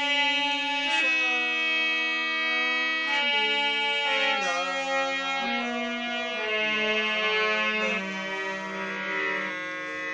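Harmonium played with sustained reedy notes that move step by step through a melody, with a man's voice singing along and ornamenting the line.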